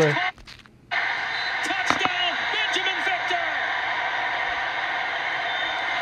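College football game audio playing from a highlight video on a device: a steady crowd din that starts suddenly about a second in, with faint voices in it.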